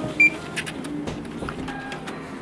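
Background music with a short, loud electronic beep about a quarter of a second in.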